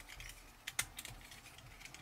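Faint plastic clicks of a Transformers Unite Warriors jet figure's parts being moved by hand, a handful of light clicks, most of them around the middle.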